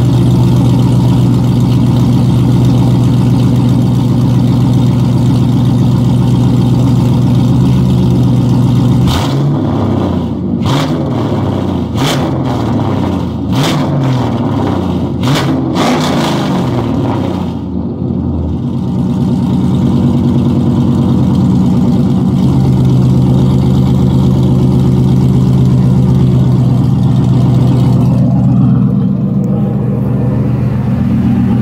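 An LS1 V8 in a swapped Mazda RX-7 idles through its new dual exhaust. About nine seconds in, the throttle is blipped several times, the engine note rising and falling with each rev, and then it settles back to a steady idle.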